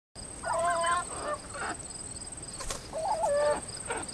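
A domestic turkey gives two short, wavering calls, one about half a second in and another about three seconds in, over a steady high insect trill.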